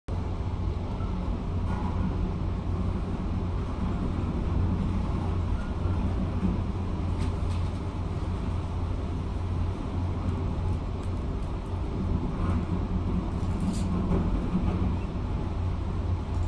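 Demolition excavator's diesel engine running with a steady low rumble, muffled through a window pane, with a few faint knocks as it breaks up the concrete viaduct deck.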